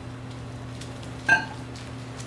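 Quiet pause filled by a steady low electrical hum, with faint rustling and handling as Bible pages are turned at a wooden pulpit. A single short, sharp pitched blip comes a little over a second in.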